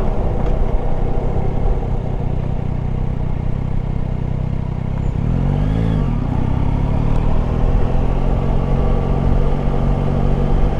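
Yamaha Tracer 9 GT's three-cylinder engine running under way on the road. About five seconds in, the engine note swings up and back down once, then settles into a steady, slightly higher note.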